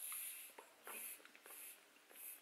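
Air blown by mouth through a PWK carburettor's power jet passage in four short hissing puffs, testing whether the new adjuster needle opens or blocks the jet.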